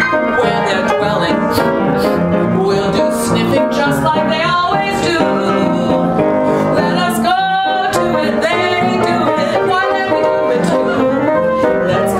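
A woman singing a 1930s popular song to ragtime-style upright piano accompaniment, with a long held note that wavers in pitch about seven seconds in.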